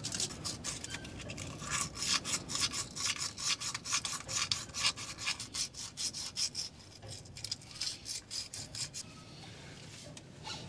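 Emery paper rubbed quickly back and forth on a corroded battery terminal, a run of fast scratchy strokes to clean off the corrosion. The strokes thin out and mostly stop about seven seconds in.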